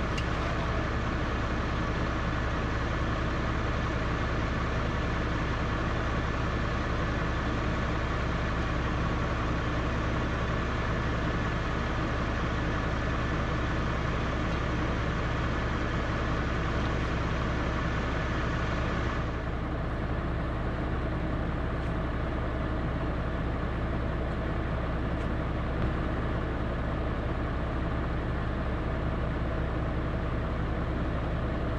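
Valtra tractor's diesel engine idling steadily, a constant low drone. A higher hiss over it cuts off about two-thirds of the way through.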